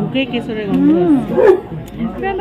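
People talking, with voices overlapping.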